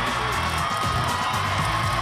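Background music with a repeating bass line.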